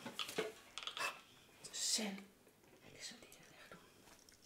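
Soft whispering and quiet voice sounds, with a few small clicks from handling.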